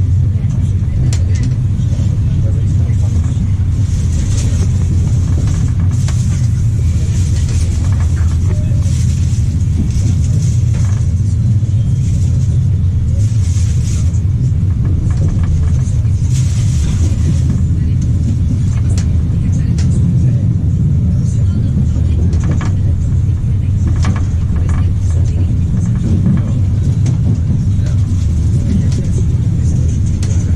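Inside a UIC-Z Intercity passenger coach as the train rolls out of the station: a steady low rumble of wheels on rail, with a hiss that comes and goes and scattered sharp clicks over rail joints and points.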